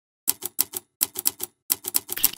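Typewriter keystroke sound effect: sharp key clacks in three quick bursts of about four, with short pauses between them, as the letters of a logo are typed out.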